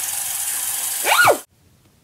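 A bathroom sink tap running with a steady hiss of water. About a second in, a short high squeal rises and falls over it, and then the sound cuts off abruptly.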